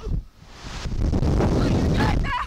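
Rushing air buffeting the camera microphone as the slingshot ride's capsule flies through the air. The rush builds about half a second in and stays loud and steady to the end.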